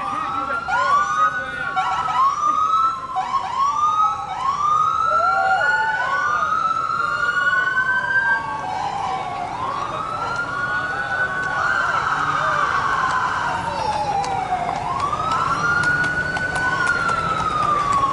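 Police sirens sounding: quick overlapping rising-and-falling sweeps about once a second for the first several seconds, then slower wails that rise and fall over several seconds each.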